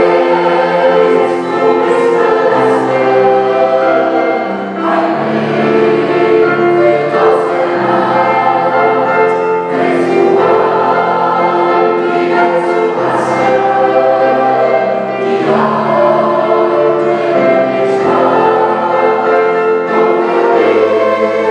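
Mixed choir singing a sacred piece in several voice parts with piano accompaniment. It sings in phrases of about five seconds with short breaks between them.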